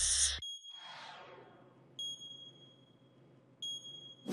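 Electronic interface sound effects for an on-screen satellite targeting display: a short burst of noise that cuts off and trails into a falling whoosh, then three high electronic beeps about a second and a half apart, each tone lingering as it fades.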